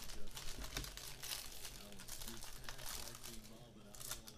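Foil trading-card pack wrappers being torn open and crinkled by hand, an irregular run of crackles.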